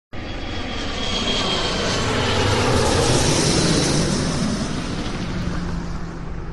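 Airplane engine noise: a steady rushing drone with a low rumble that swells to its loudest about halfway through and then eases a little.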